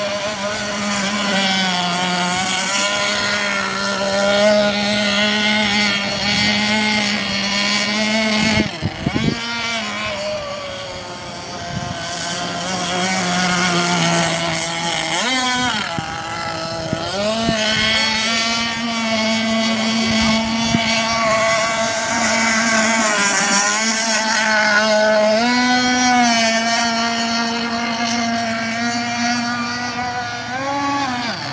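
Radio-controlled boat's motor running on the water: a steady, high-pitched whine over a hiss. Its pitch drops and picks back up about nine seconds in and again around fifteen seconds, and it rises briefly near the end.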